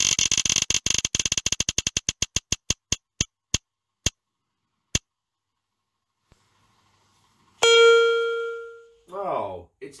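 A phone spinner-wheel app's ticking as the wheel slows down: clicks come fast at first, then space out one by one and stop about halfway through. A single ringing chime follows a couple of seconds later and fades out as the wheel settles on its result.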